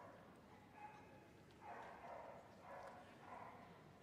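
Near silence: faint arena background, with a few soft, indistinct sounds.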